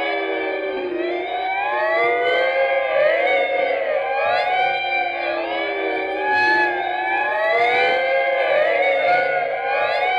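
Electric guitar run through effects, playing free improvisation: many overlapping sustained tones sliding up and down in pitch in arcs, layered into a continuous wailing texture.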